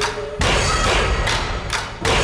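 Dramatic suspense background score: sharp percussion hits about twice a second over faint held tones.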